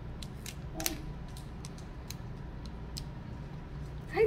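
Foil wrapper of a Pokémon card booster pack crinkling in scattered sharp crackles as fingers pick at its sealed top, which is resisting being torn open.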